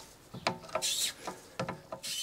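Rear brake caliper piston being wound back with a wind-back tool. It gives irregular metallic clicks and short scrapes as the tool is pushed and turned clockwise.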